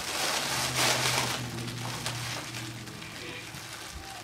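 A long hissing inhale of helium drawn through the neck of a foil birthday balloon held to the mouth. It is strongest in the first second or so, then trails off.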